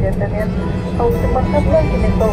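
Steady low rumble of an airliner cabin as the plane taxis, with voices over it.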